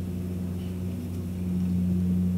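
A steady low hum of room tone through the table microphones, with no speech.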